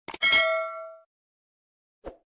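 Subscribe-button animation sound effect: two quick clicks, then a bell ding that rings out and fades within about a second.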